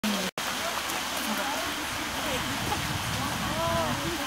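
Indistinct voices of people talking, over a steady rustling, crackly background noise; the sound cuts out for a split second near the start.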